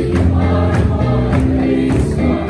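A church congregation singing a hymn together in many voices, over a steady beat.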